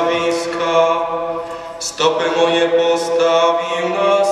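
A young man's solo voice chanting a psalm at a microphone, holding long notes, with a short break for breath about two seconds in.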